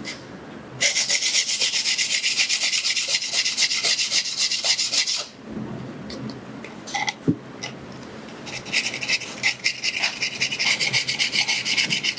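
Wet sandpaper scratching in quick, even strokes against the edge of a cast Jesmonite terrazzo tray to smooth its jagged edges. The strokes stop for a few seconds in the middle, then start again.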